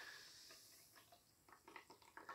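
Near silence: only the faint fizz of cider being poured from a can into a glass, fading in the first half second, with a few tiny pops of bubbles near the end.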